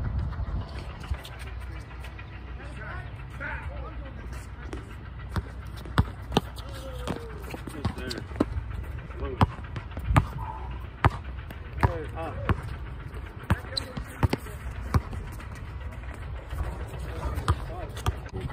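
Basketball bouncing on an outdoor hard court during a pickup game: sharp, irregularly spaced thuds that begin about five seconds in, over players' distant voices.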